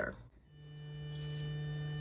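Steady electrical hum from a powered-on xTool laser engraver standing by. A low tone with a few fainter higher tones fades in about half a second in and then holds.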